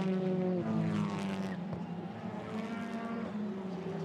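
TCR touring cars' turbocharged four-cylinder engines running at speed on track. Several overlapping droning engine notes, their pitch sagging and rising again as the cars pass and shift.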